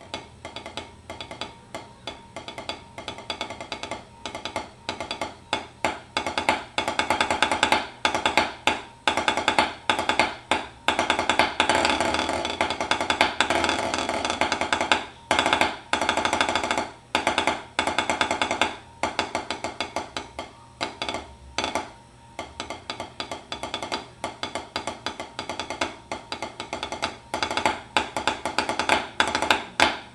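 Wooden SD-1 drumsticks playing a concert snare solo on a small practice pad with a coated drum head: fast, dense strokes and buzzed rolls, the rolls not very dense. The playing swells to its loudest, most continuous rolling a little before the middle, then drops to a softer passage before building again near the end.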